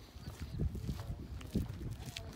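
Footsteps on pavement with phone handling noise from walking: a run of dull low thumps a few tenths of a second apart, with a few faint clicks.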